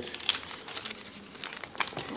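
Close crinkling and rustling handling noise, a run of small irregular crackles right at the microphone as the phone is moved against clothing while a just-bought item is stowed.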